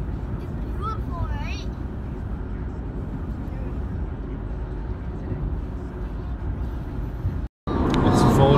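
Steady road noise inside the cabin of a car cruising on a highway, a low, even rumble. It cuts out briefly near the end.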